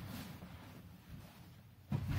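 Faint handling and shuffling sounds as a person moves around an upholstered armchair lying on its side on carpet, with one dull thump near the end as he kneels and takes hold of the chair.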